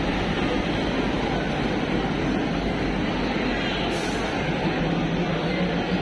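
Train locomotive standing at the platform with its engine running, a continuous rumble; a steady low hum comes in about four and a half seconds in.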